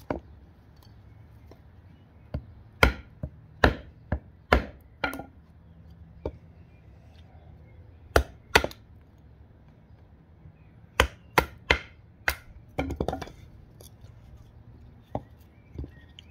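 A Tracker knife chopping into a small split log section standing on a wooden stump: sharp wooden knocks, mostly in quick runs of two to four, about fifteen strokes in all.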